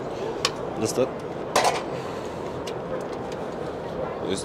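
Folding legs of an aluminium miter-saw stand being folded away: a few short clicks and knocks, with the loudest clatter about one and a half seconds in. Trade-hall crowd chatter runs underneath.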